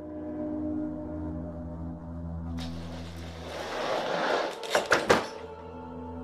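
Eerie ambient music with sustained tones; about halfway in a rising rush of noise builds and ends in three quick, sharp clatters, an object falling and hitting the floor, the loudest moment, before the music carries on.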